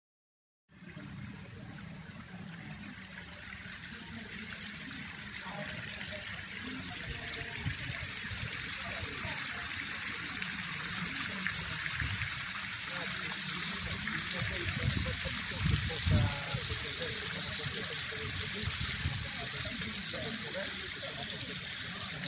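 Water jets of a pool fountain splashing down into the shallow basin, a steady rush of falling water that grows gradually louder, with people's voices in the background.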